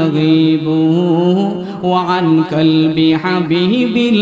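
A man chanting a Bengali Islamic sermon (waz) in a melodic, drawn-out sing-song voice into a microphone, holding long notes in two phrases with a short break just before the halfway point.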